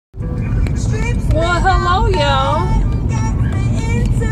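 Steady low rumble of a car driving, heard from inside the cabin, with a woman's voice over it from about a second in.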